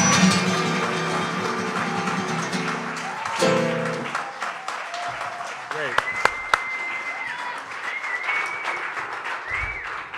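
A live song accompanied by guitar, ending on a final chord that stops about four seconds in. Then audience applause and cheering.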